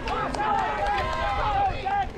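Several spectators shouting and cheering as mountain bike racers pass, their voices overlapping, with a run of short repeated calls near the end. A steady low rumble sits underneath.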